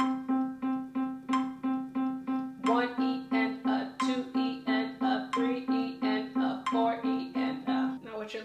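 Middle C on a Williams digital piano, struck over and over with the right thumb in an even sixteenth-note rhythm, about three notes a second.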